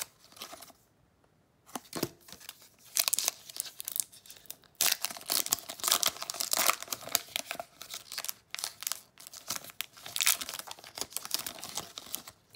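A Pokémon booster pack's foil wrapper being torn open and crinkled by hand, in repeated bursts of tearing and crackling that begin a little under two seconds in.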